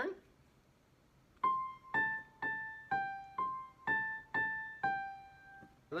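Electronic keyboard in a piano voice playing a short melody of eight single notes, about two a second, after a second and a half of quiet: the sol-mi-mi-re pattern played twice, each phrase stepping down from a high note, every note struck and left to fade.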